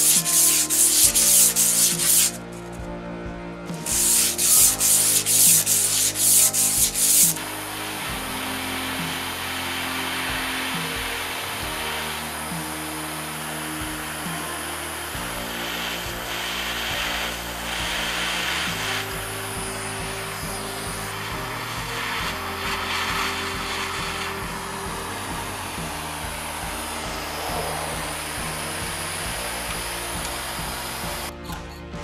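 A hand file scraping in quick rhythmic strokes across a stainless steel strip clamped in a bench vise, in two runs of about two and three seconds. Then a steady hiss from a gas torch flame heating the strip, with background music throughout.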